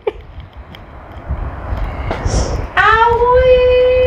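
A woman's voice slides up into one long held sung note that starts late and carries on, after a quieter stretch with a brief breathy hiss.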